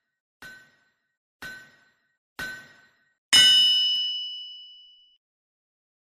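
News-ident sound effect: short metallic pings about once a second, each louder than the last, then a loud bright clang that rings out for about a second and a half.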